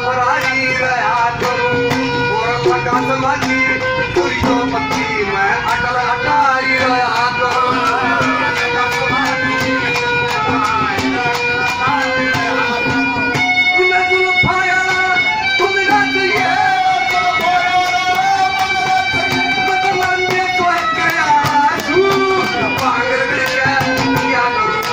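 Live Haryanvi folk music: a wavering melody line with steady held tones over a quick, steady hand-drum beat.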